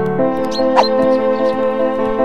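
Cartoon background music with a steady melody, with a brief rising squeak a little under a second in.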